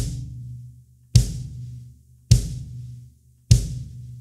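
Kick drum (bass drum) played alone with the foot pedal: four single strokes about 1.2 s apart. Each is a punchy low boom that rings out for about a second before the next.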